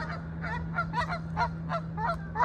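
A bird calling in a rapid run of short pitched calls, about four a second.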